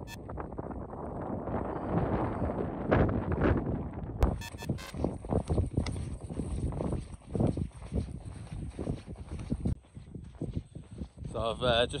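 Wind buffeting the microphone in uneven gusts, with a hiker's trekking poles clicking sharply on wet tarmac a few times about four to five seconds in.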